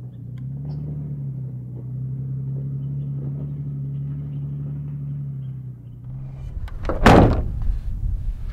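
Toyota 4Runner engine running steadily at low revs, its pitch rising a little about a second in. Near the end the engine tone gives way to a rougher rumble, and then a loud sudden thump.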